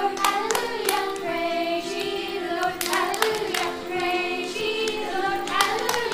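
Small children and a woman singing a children's song together, with sharp hand claps here and there, several in quick pairs.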